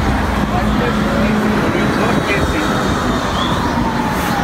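Street ambience: a steady wash of road traffic, with people talking indistinctly in the background.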